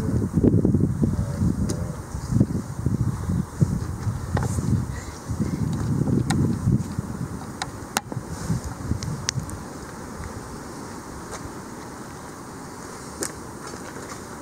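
Wind buffeting the camera microphone in irregular low gusts, with a few sharp handling clicks. It settles to a quieter steady hiss in the last few seconds.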